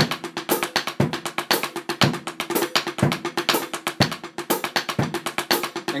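Drumsticks playing paradiddle-diddles in steady sixteenth notes on a drum, with a heavier low beat on each quarter note about once a second from the feet.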